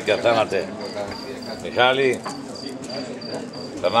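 Crickets chirping steadily, a short high chirp repeating about three times a second, with men's voices talking over it.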